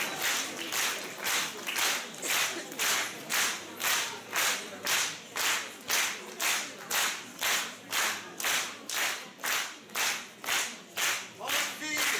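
Audience clapping in unison, a steady rhythmic ovation of about two claps a second.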